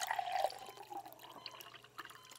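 Faint liquid sounds: a soft trickle and a few small drips.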